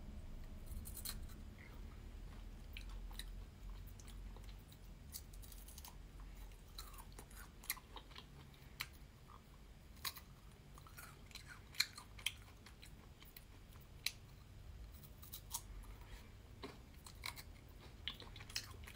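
A person nibbling the chocolate coating off a Kit Kat wafer finger and chewing, faint, with scattered small crisp clicks from the bites.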